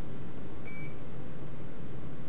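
Steady low room noise with a single short, high electronic beep a little over half a second in.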